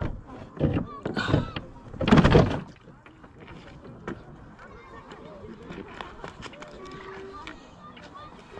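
Light water lapping and small splashes against the hull of a Traxxas M41 RC boat sitting still on the water, a scatter of soft ticks and clicks; the motor is not driving. A few louder bursts, partly voice, fill the first two and a half seconds.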